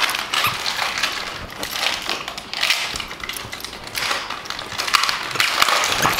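A Boston terrier scuffling with plush dog toys on a fleece blanket right beside the microphone: a steady run of rustling, scratching and small clicks.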